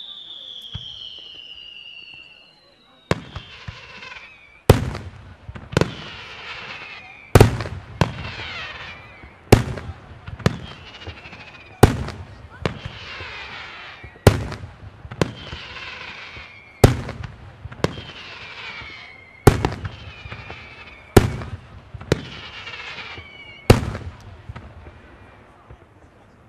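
Fireworks display: whistles falling in pitch at first, then a steady run of loud, sharp shell bursts about every one and a quarter seconds, many followed by a smaller second bang, with falling whistles and crackle between them. The bangs stop shortly before the end.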